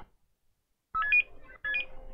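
Mobile phone ringtone: short electronic chirps of several stacked tones, heard twice, about a second in and again near the end, after a silent gap at the start.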